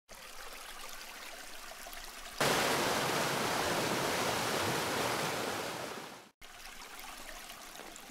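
Geyser erupting: faint water sound from the hot pool, then about two and a half seconds in a sudden loud rush of spraying water that lasts about four seconds and fades away. After a brief break, faint water sound again.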